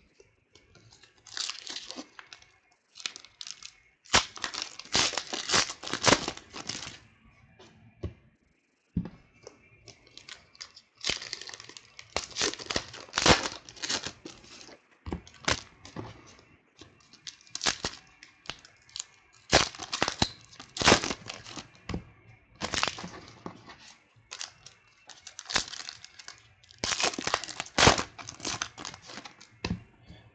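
Trading cards being handled and slid onto a stack by hand, in repeated bursts of rustling a second or two long, with some crinkling of a foil pack wrapper.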